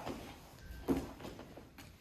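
Two grapplers rolling and sliding across foam grappling mats: bodies and rash guards scuffing on the mat surface. A short sharp sound comes about a second in.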